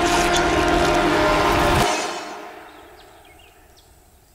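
Eerie, horn-like drone sound effect of several steady tones held together, fading away from about two seconds in.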